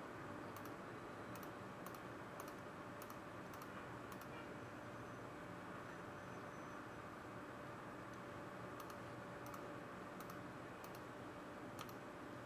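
Faint, sparse clicks, about two a second, in a run over the first four seconds and another from about nine seconds in, over a steady low hum and hiss.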